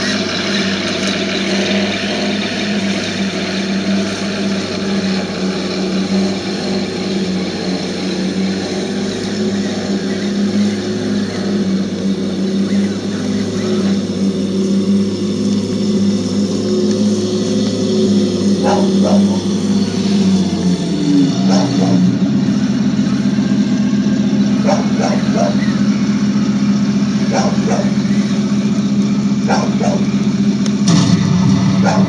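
Radio-controlled scale model tank's electronic sound unit playing a simulated tank engine running. About two-thirds of the way through, the engine note changes to a different steady rumble, and a few short clicks come near the end.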